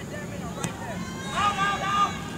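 A soccer ball kicked once about half a second in, a single sharp thud as a corner kick is taken, then voices shouting from the crowd or players during the second half.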